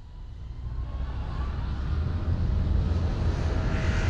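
Jet airliner engine noise, used as a sound effect. It builds over the first two seconds into a loud, steady rush with a deep low rumble.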